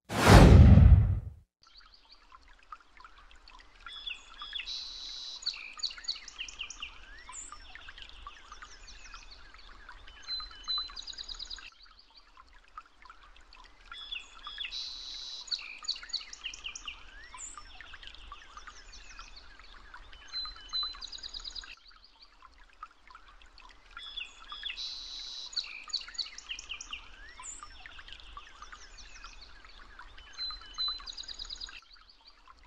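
A loud whoosh falling in pitch, then a background recording of many birds singing and chirping over a faint watery hiss, looped so that the same roughly ten-second stretch plays three times.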